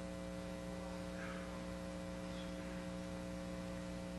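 Faint, steady electrical mains hum: a low drone with evenly spaced overtones and no other clear sound.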